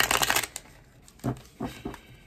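A deck of tarot cards being riffle-shuffled by hand: a rapid fluttering patter of cards that stops about half a second in, followed by a few light taps.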